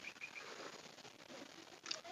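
Quiet pause with faint outdoor background sound and three short high chirps in the first half-second.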